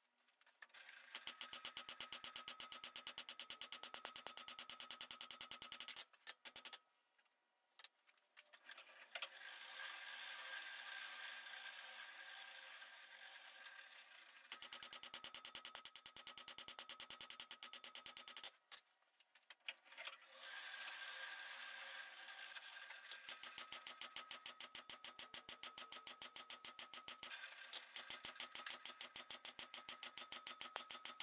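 Cross-peen hammer striking red-hot flat bar on a steel anvil in quick, steady runs of blows, the anvil ringing with each strike, as the spatula blade is fullered out. Between the runs there is a steady rushing noise.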